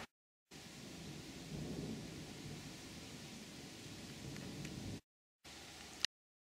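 Thunder rumbling over a steady hiss, swelling loudest about a second and a half in and then rolling on more quietly. The sound cuts to dead silence twice, at the start and near the end, and a sudden sharp crack comes right at the close.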